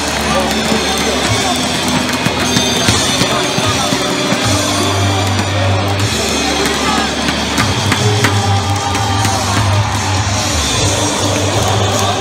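Korean baseball player cheer song: a drum-backed track over the stadium loudspeakers, with a large crowd of fans singing and chanting along.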